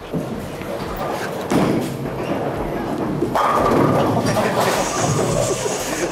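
Bowling-alley din: a lightweight six-pound bowling ball rolling down the lane and knocking pins, with a rumble that swells about a third of the way in and again past halfway, amid voices.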